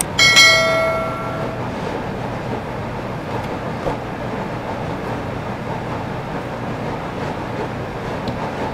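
A single bright bell-like ding rings out just after the start and fades over about a second; it is the sound effect of an on-screen subscribe-and-bell button. Under it runs a steady noisy background hum.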